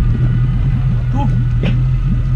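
Outboard motor of a small open tour boat idling with a steady low hum.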